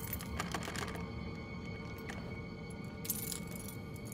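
Background music: a low, sustained ambient drone of held tones. About three seconds in comes a brief faint high-pitched rattle.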